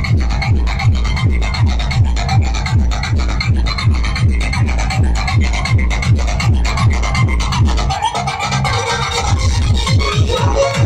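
Loud electronic dance music blasting from a street DJ truck's sound system, driven by a heavy, evenly repeating bass-drum beat. About eight seconds in, the bass beat drops out for a short break with a rising sound over it.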